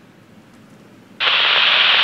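Burst of static hiss from a Tytera MD-380 handheld two-way radio's speaker as the analog repeater tower comes back after a short transmission. It starts abruptly a little over a second in and cuts off sharply about a second later.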